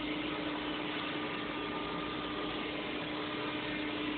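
Steady machine hum: an even hiss with a constant low tone under it.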